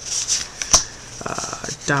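Baseball trading cards being handled and slid over one another while a pack is flipped through: a light swish, one sharp click about a third of the way in, then a quick run of small flicks just before speech resumes.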